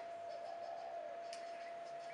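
Quiet room tone: a faint steady hiss with a thin high hum running through it, and one faint click about a second and a half in.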